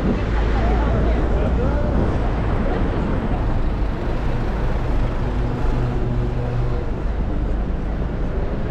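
Street traffic: a double-decker bus and cars running past with a deep, steady engine rumble, and passers-by talking. In the middle, a vehicle engine hums steadily close by.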